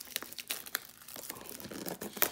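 Clear plastic shrink wrap crinkling and tearing as it is peeled off a trading-card hobby box: a run of irregular sharp crackles.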